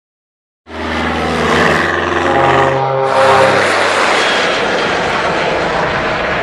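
Airplane engine sound effect on a title sting. Out of silence a little under a second in, a steady pitched engine drone begins; about three seconds in it turns into a broader, steady roar.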